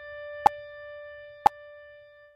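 Electric piano holding a single treble note, a D, that slowly fades. Two metronome clicks fall a second apart over it.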